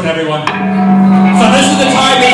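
Live punk rock band with the singer, who also plays bass, holding one long sung note from about half a second in over the loud band.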